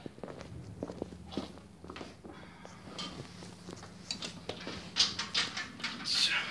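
Footsteps on a rubber gym floor, then a run of louder clacks and rustles near the end as a person sits down at a seated cable row machine and takes hold of the handle.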